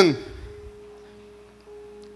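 A single soft, steady musical tone held at one pitch, as a background note sustained under a pause in speech. A man's voice trails off at the very start.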